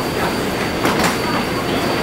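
Inside a stopped Taipei Metro car with its doors open: steady car noise with a thin high whine, passengers' faint voices, and a brief knock about a second in.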